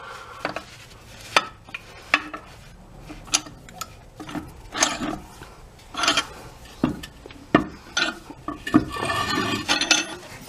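Irregular metal clinks and knocks as a steel ball-peen hammer head is handled and set into the jaws of a cast-iron bench vise.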